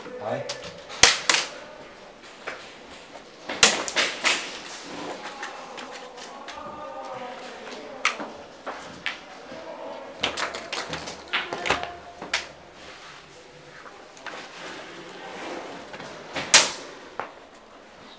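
Scattered single sharp cracks of airsoft guns firing, a few seconds apart, the loudest near the start and a little before the end, with muffled voices in between.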